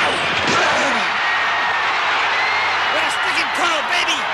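Stadium crowd noise with men shouting on the field and sideline, and a few sharp thuds of football pads colliding.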